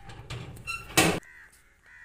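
A bird's loud, harsh caw, one short call about a second in, with a fainter call just before it.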